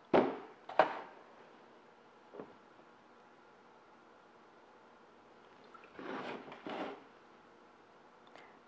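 Two sharp knocks of a plastic pot being set into a plastic bowl, then after a quiet stretch, water from a plastic milk container pouring onto potting mix in two short spurts near the end.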